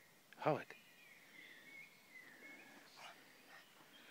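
A pug barks once, a single short bark that falls in pitch, about half a second in. A faint, thin high tone wavers on for a couple of seconds after it.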